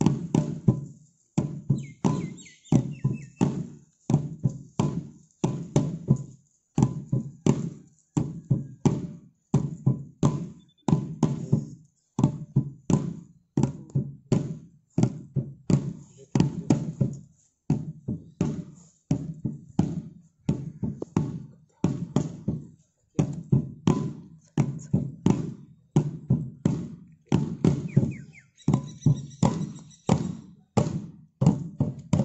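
A folk dance drum beaten in a steady, repeating rhythm, each stroke ringing and dying away. Brief high notes sound faintly over it about two seconds in and again near the end.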